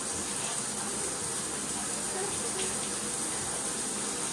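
Shower water running in a steady, even rush.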